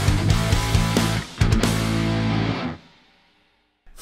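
Rock-style intro jingle with electric guitar, fading out about three quarters of the way through into a second of near silence.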